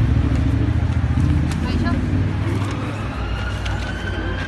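Street traffic with crowd chatter: a passing vehicle's low engine rumble, strongest in the first half, then an emergency-vehicle siren coming in about two-thirds of the way through, its wail slowly rising in pitch.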